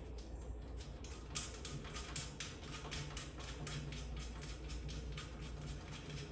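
A ratchet wrench clicking in a rapid, even run, about five clicks a second, as bolts are turned down on the sharpener's stand.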